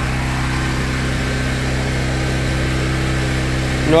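Steady, constant-pitch machine hum with no change in speed or load.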